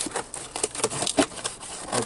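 Scissors cutting open the packing tape on a cardboard box: an irregular run of short snips and scrapes.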